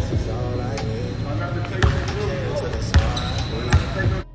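A basketball bouncing on a hardwood gym floor, with three sharp bounces about a second apart in the second half.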